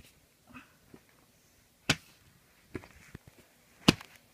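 Handling noise: soft rustles and a few sharp clicks as plush toys are picked up and moved by hand. The two loudest clicks come about two seconds apart.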